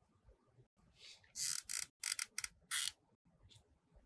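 Hands handling craft materials on a tabletop: a cluster of short scratchy rustles and scrapes starting about a second in, the loudest of them near the middle, then quiet handling.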